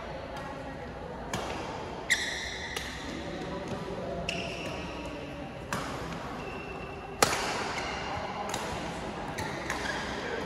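A shuttlecock is struck back and forth by badminton rackets in a rally, giving sharp pops about every second, loudest about seven seconds in. Short high squeaks, typical of court shoes on the synthetic mat, come between hits.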